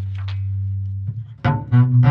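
Double bass played solo: a long, low bowed note fades away, then after a brief gap a run of short, quicker notes starts about a second and a half in.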